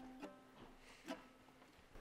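Faint plucked string instrument: a single note rings on and fades away, with two soft plucks about a quarter second and about a second in.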